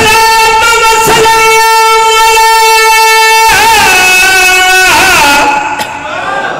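A zakir's chanting voice holding one long high note for about three and a half seconds, then wavering and turning it in ornaments until it ends shortly before the end.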